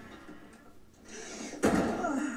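Lid of a heavy metal footlocker swung down and slammed shut, a loud sudden clang a little over a second and a half in, with a brief ringing tail, heard from the show's soundtrack.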